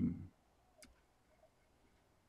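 A single sharp computer mouse click about a second in, selecting a spreadsheet cell, against quiet room tone.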